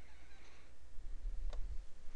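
Quiet background with a steady low hum and hiss, a faint breath-like rustle near the start and a single short click about one and a half seconds in.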